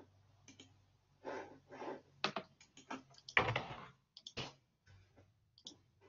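Faint, irregular clicking and tapping of a computer keyboard being typed on, over a faint steady low hum.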